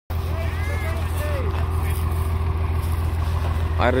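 Truck-mounted borewell drilling rig running steadily, a loud, even low drone. Faint calls sound over it, and a man starts speaking near the end.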